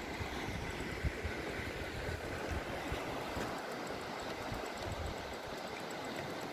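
Fast-flowing river water rushing steadily, with an uneven low rumble of wind buffeting the microphone.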